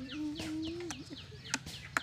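Chickens clucking and chirping: a run of short falling chirps repeating several times a second, with a low drawn-out call in the first half. A couple of sharp clicks come near the end.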